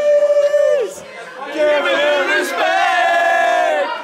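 A group of men singing loudly together without accompaniment: one long held note that breaks off about a second in, then another line with wavering pitch.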